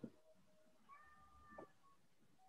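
Near silence: a keyboard or mouse click right at the start as a web address is entered, then a faint, high-pitched call held for just under a second, about a second in.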